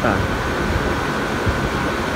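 Air-conditioner outdoor condenser units running, their fans giving a steady rushing noise with a thin, constant high hum.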